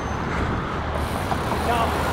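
Steady rushing outdoor noise while riding a bicycle: wind over the microphone mixed with road traffic on the bridge's roadway alongside, with faint voices in the background.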